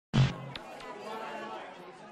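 A brief loud clipped snatch of a voice right at the start, then faint background chatter of people that fades away.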